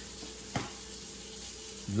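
Steady background hiss with a faint hum, and a single short click about half a second in.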